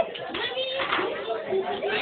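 Children talking at once in a classroom, a low jumble of overlapping voices.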